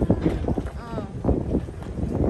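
People's voices, not clearly made out, over wind buffeting the microphone.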